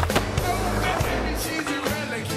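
Skateboard wheels and deck on a concrete ramp, with several sharp clacks of the board, the strongest right at the start, over a song with a steady beat.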